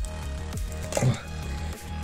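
Background music with a steady low bass, under faint crinkling of plastic shrink wrap being peeled off a metal trading-card tin.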